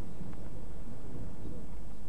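Steady low rumble of background noise, with no distinct event in it.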